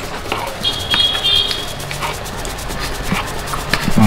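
Metal spoons clinking and scraping against a shared food bowl as people eat, in scattered light knocks, with a brief high squeal about a second in.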